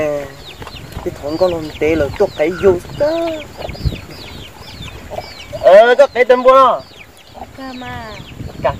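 Chickens clucking, with many short falling high-pitched peeps throughout.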